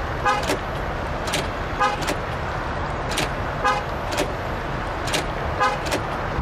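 The 2020 Mercedes-AMG G63's old-school mechanical central door locks cycling again and again, each a sharp solid click, about ten in all. Every two seconds or so a click comes with a short, horn-like chirp.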